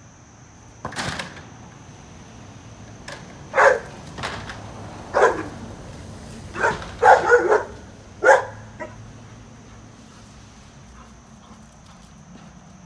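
Dog barking at a delivery truck on the other side of the fence. The barks come singly and irregularly, with a quick run of three in the middle, and stop about nine seconds in. A steady high drone of insects runs underneath.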